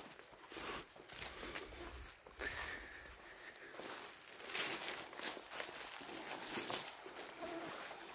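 Faint, irregular footsteps on a forest trail, with rustling as the walker brushes through branches and undergrowth.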